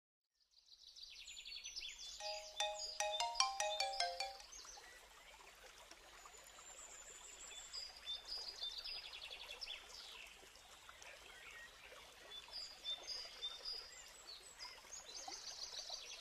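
Birds chirping and trilling, with a short run of bright, chime-like struck notes stepping downward about two seconds in. Quieter bird calls carry on after the notes.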